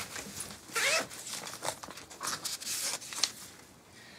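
A few short rasps and rustles as a letter in its envelope is brought out and handled.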